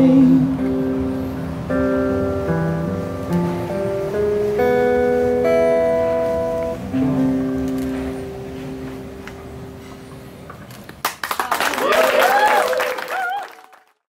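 The closing chords of a song on keyboard and acoustic guitar, held and slowly fading out. About eleven seconds in, an audience breaks into clapping and cheering, which then fades out.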